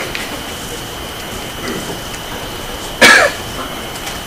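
A single short, loud cough about three seconds in, over a steady hiss with a thin high whine from the courtroom microphone feed.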